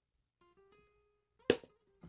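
Faint background music: a soft plucked-guitar note held for about a second. Then a single sharp click about one and a half seconds in.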